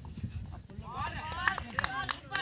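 Men's voices calling out across an open field, starting about a second in, over a low rumble and a few sharp clicks.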